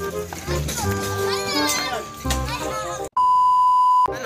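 Background music with a child's voice, then, about three seconds in, a loud steady censor-style bleep tone edited in, holding for nearly a second.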